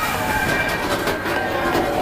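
Expedition Everest roller coaster train running along its track at speed, its wheels rumbling and clattering, with a few sharp clicks.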